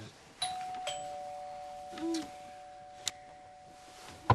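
Two-note electronic doorbell chime: a higher note, then a lower one about half a second later, both ringing on with a long, steady sustain.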